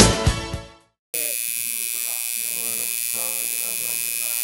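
A pop song with singing fades out in the first second. After a short silence, a tattoo machine starts buzzing steadily as the needle works ink into skin.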